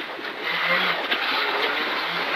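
Rally car's engine pulling in first gear through a tight corner, with tyre and gravel road noise, heard from inside the cabin at a steady level.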